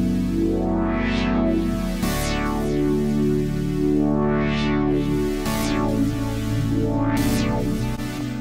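Sequenced pad from the Reveal Sound Spire software synthesizer, several layered pad parts playing sustained chords with a pulsing rhythm. Bright swells open and close every second or two, and the chord changes about two seconds in and again about five and a half seconds in.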